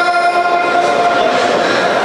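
A single voice holds one long chanted note at a steady pitch, then fades about a second and a half in, leaving the reverberation of a large hall.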